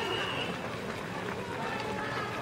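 Many runners' footsteps on pavement as a crowd sets off, with the chatter of voices among them.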